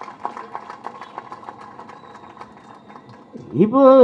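A pause in a man's speech at a microphone: a low background with faint clicks about three a second, then about three and a half seconds in his voice comes back loud, the pitch rising sharply.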